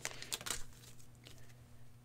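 Faint crinkling of an opened trading-card pack wrapper as the cards are slid out, a few light rustles in the first half second that fade to a low hush.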